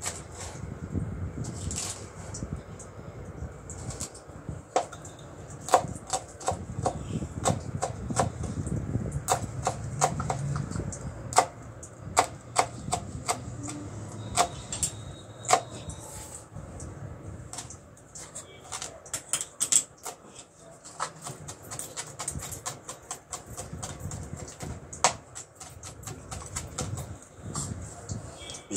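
Kitchen knife chopping fresh green stalks on a plastic cutting board: sharp, irregular knocks of the blade striking the board, often in quick runs.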